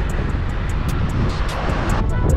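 Wind rushing and buffeting over the camera microphone of a bicycle being ridden along a street, with a faint, fast, even ticking running through it.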